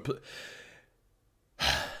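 A man breathing out softly, then after a short pause a louder, breathy sigh near the end.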